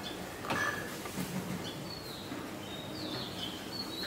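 Small birds chirping in the background: short high notes, some falling in pitch, over steady background noise. A single short slap or knock comes about half a second in.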